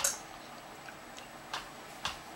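Soft wet clicks and smacks of a baby eating puréed turkey from a plastic spoon. A sharp click comes at the start, then a few fainter ones, with a clearer click about a second and a half in.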